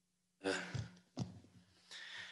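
A man's short audible breaths close to a microphone, three in a row, over a faint steady low hum.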